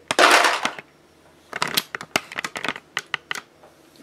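Small plastic doll accessories clattering as a hand rummages through a plastic organizer case: a loud rustling rattle in the first second, then a run of quick light clicks.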